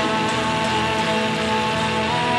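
Offset-body electric guitar strummed in a dense, steady wash of sound, with a woman's voice holding a sung note over it.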